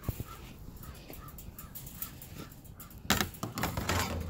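A bird calling in a quick, even series of short calls, about four a second, which stop a little before the end. Then comes a loud rustling crunch.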